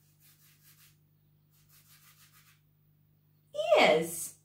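A fingertip drawing in a thin layer of flour on paper: two short runs of quick, soft scratchy strokes. Near the end a woman's voice gives a loud, falling "hmm".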